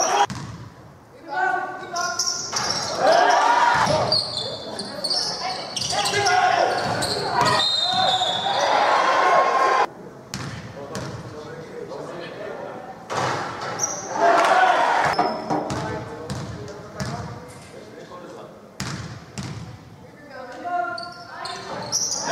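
A basketball being dribbled and bounced on an indoor court during a game, mixed with loud shouts from players and coaches that echo around a large sports hall.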